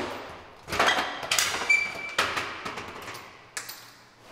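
A large leather sofa knocking and scraping against a door frame and glass door while being forced through a narrow doorway: a string of knocks, with a short squeak partway through.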